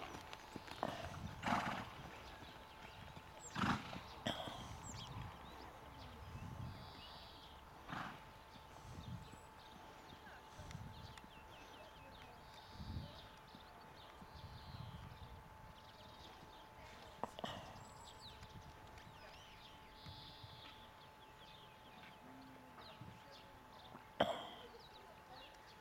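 A horse's hooves thudding dully in the sand of a riding arena as it trots and canters under a rider. A few sharp clicks stand out, the loudest in the first four seconds.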